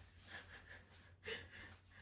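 Near silence with faint breathing, one slightly louder breath a little past halfway.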